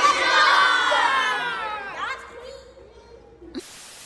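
A group of children shouting a long cheer together, their voices sliding down in pitch and fading out after about two seconds. Near the end a steady hiss of TV-static noise starts, as a transition effect.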